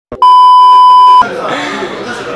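A loud, steady, high-pitched test-tone beep of about a second, the kind played with TV colour bars, cutting off suddenly as a man's voice comes in.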